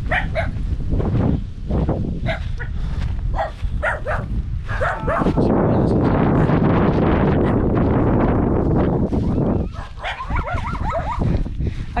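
A dog barking repeatedly in short, sharp barks for about the first five seconds and again near the end. For about four seconds in the middle there is a steady rushing noise.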